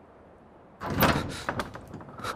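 Heavy wooden doors pushed open about a second in, a sudden loud clatter followed by a few rattling knocks of the panels settling.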